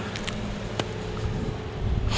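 Steady outdoor background noise with a low hum and a few faint clicks.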